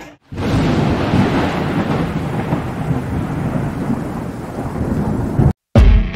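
A loud, thunder-like rumbling noise with no voices or tune in it, starting just after a brief silence and slowly easing off, cut off near the end.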